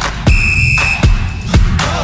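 Electronic dance music with a deep kick drum beating about twice a second. A held high, whistle-like synth note sounds for about a second starting a third of a second in, and a falling synth glide comes near the end.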